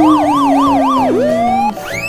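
Police-car siren sound effect: a fast up-and-down wail, about four to five sweeps a second, over a steady lower tone. About a second in, it breaks off with a downward swoop and gives way to rising glides.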